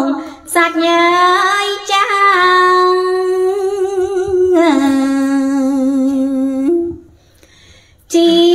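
A woman singing Khmer smot, the unaccompanied Buddhist chanted verse, in long held notes ornamented with wavering turns. About halfway through, the melody drops to a lower note, which she holds for about two seconds before breaking off shortly before the end.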